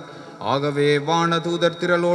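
A priest chanting a liturgical prayer through the church microphone, his voice held on one steady reciting tone in phrases, resuming after a short pause at the start.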